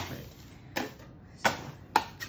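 Sharp knocks, roughly two a second, as a metal bench scraper and palette knife strike each other and the work surface while chocolate is tabled to temper it.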